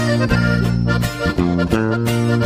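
Live norteño band playing the instrumental opening of a song: an accordion carries a stepping melody over rhythmic guitar strokes and sustained low notes.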